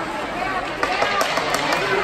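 Spectators' indistinct chatter at an ice hockey game, with a few sharp clacks of sticks and puck on the ice about a second in.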